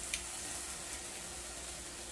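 Small pieces of chicken frying in oil in a skillet, a quiet steady sizzle, with a faint click of metal tongs near the start.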